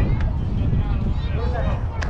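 Distant voices at a youth baseball game, with wind rumbling on the microphone throughout and a sharp click near the end.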